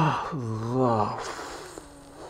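A man groaning a drawn-out, wavering 'oh' of under a second, the moan of someone painfully coming round, followed by a breathy gasp near the end.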